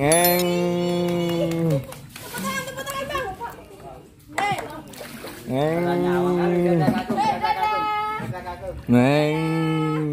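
A person's voice making long, level, drawn-out vocal sounds: three held notes each one to two seconds long, with shorter, higher-pitched calls between them.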